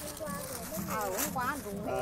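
Quiet, faint conversational speech, softer than the loud talking just before and after.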